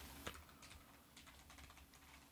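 Faint typing on a computer keyboard: a scattering of quiet key clicks.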